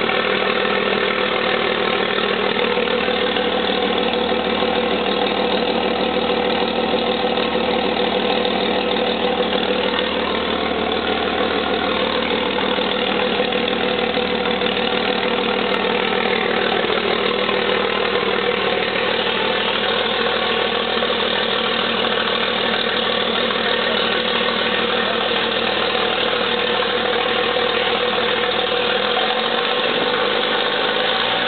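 Cummins G855 natural gas six-cylinder power unit running steadily on its stand.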